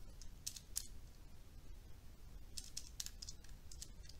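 Faint clicks of calculator keys being pressed: two single presses near the start, then a quick run of presses in the second half as the division is keyed in.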